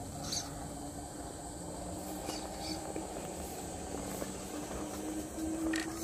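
Radio-controlled rock crawler's electric motor and gear drivetrain whining steadily at low speed under load as it climbs a rock slab, the whine rising slightly in pitch near the end.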